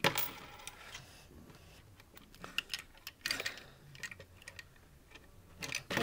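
Plastic Lego bricks clicking and knocking as hands push at a stuck piece of a Lego coin machine. There is a sharp click at the start, then scattered light clicks, bunched about three seconds in and again near the end.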